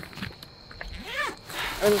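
Luggage and bags being shifted about in a car trunk, faint rustling and small knocks, with a short rising-and-falling voice sound about a second in.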